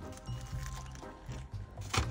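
Quiet background music with steady held notes, over someone biting into and chewing a fast-food burger, with a few short crinkles of its paper wrapper near the end.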